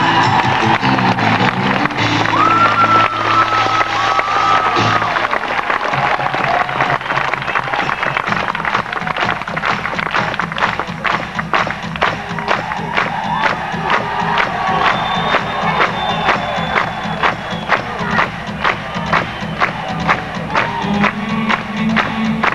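A live band holds a sustained chord that changes about five seconds in, while a concert crowd cheers and whistles. From about eight seconds on, a steady beat of sharp strokes, two to three a second, runs over a held low note, with the crowd still cheering.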